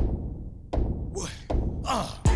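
Intro of a crunk hip-hop track: three deep booming bass-drum hits about three-quarters of a second apart, each ringing until the next, with short shouted vocal ad-libs between them.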